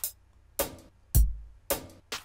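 Programmed drum-machine loop playing back from FL Studio's step sequencer at about 108 BPM: sampled kick and snare hits, a few of them, with a deep kick about halfway through.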